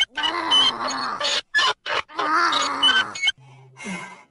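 Cartoon Minion voice grunting and groaning with effort in long, strained bursts while heaving on a pipe wrench. It drops away a little after three seconds, and a short falling vocal sound comes near the end.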